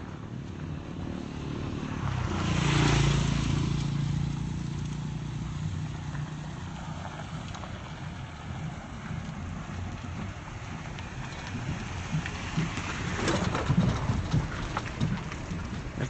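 Outdoor background noise, with a motor vehicle's engine swelling up and fading away a few seconds in. Short scuffs and knocks come near the end.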